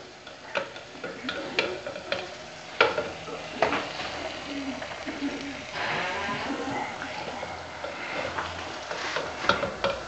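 Spoon knocking and scraping against pots as cooked lentils are spooned into a clay pot, a series of scattered clicks and clinks, over a faint sizzle of food frying on the stove.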